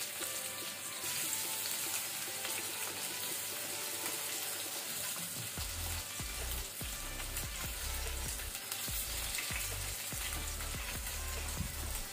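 Raw potato pieces sizzling in hot oil in an aluminium kadai: a steady hiss with fine crackles. A low rumble joins about five and a half seconds in.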